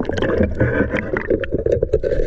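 Water sloshing and gurgling around a camera housing as it goes under the surface during a dive, with scattered sharp clicks and knocks.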